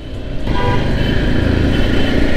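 Riding a Thai-built Honda CBR motorcycle through city traffic: steady wind rush and engine rumble on a chest-mounted mic. A faint vehicle horn sounds in the traffic.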